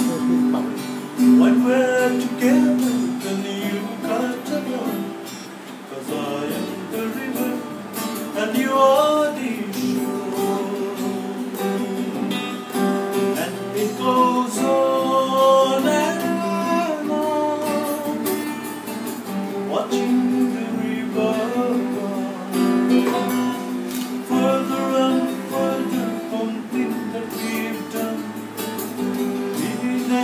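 A man singing while strumming and picking an acoustic guitar.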